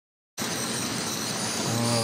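A steady hiss of background noise begins abruptly about a third of a second in, and a man's voice starts just before the end.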